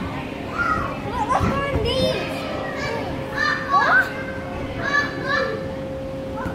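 Young children's shouts and squeals as they play, coming in short bursts throughout, over a steady tone.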